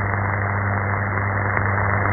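Shortwave AM reception of Vatican Radio on 11870 kHz during dead air: the carrier is unmodulated, leaving steady static hiss with a low hum beneath it.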